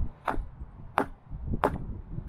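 A hatchet wedged in a round log is struck down, log and all, onto a wooden plank to drive the blade through and split the log. Three sharp wooden knocks come about two-thirds of a second apart, with duller thuds between them.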